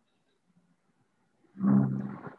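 Quiet, then about one and a half seconds in a man's short, low, held vocal sound, loud and with a steady pitch.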